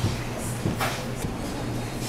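A steady low hum of room noise, with a short rustle about half a second in and a faint click or two around a second in as a hand handles the camera.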